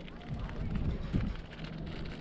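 Outdoor background noise with a low rumble and faint, indistinct voices at a steady moderate level.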